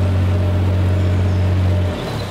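A narrowboat's diesel engine running with a steady low hum. Just before the end it drops in level and turns uneven.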